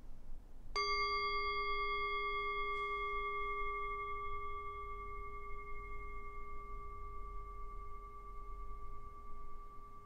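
Metal singing bowl struck once with a striker about a second in, then ringing on with a low tone and two clear higher tones; the highest overtones fade within a few seconds while the main tones keep sounding.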